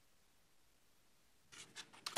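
Near silence: room tone, with a brief faint rustle near the end.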